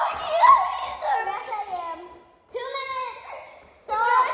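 Young children's high-pitched voices, vocalizing and chattering without clear words, with a short break a little past halfway.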